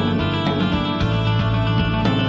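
Post-rock band playing live instrumental music: held, layered electric guitar and keyboard chords over drums, at an even, loud level.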